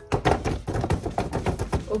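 A rapid, irregular drumroll of hand taps, many quick pats a second, building up to a reveal.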